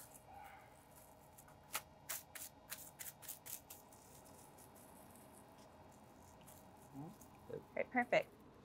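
Plastic cling wrap crackling in a quick run of short, sharp crinkles, about two to four seconds in, as it is rolled tightly around a block of raw tuna. Faint.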